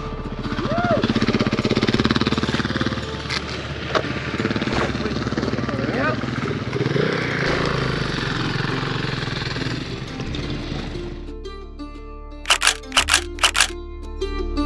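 Motorcycle engine idling with a rapid, even pulse, with wind on the microphone and faint voices. About eleven seconds in this cuts to music with plucked-string notes.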